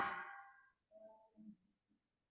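A preacher's voice trails off into the room. About a second in, a faint, distant voice briefly calls out a reply from the congregation.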